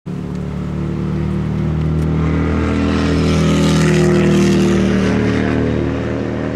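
Road traffic: a vehicle passing by, swelling to its loudest about four seconds in and then fading, over a steady low engine hum.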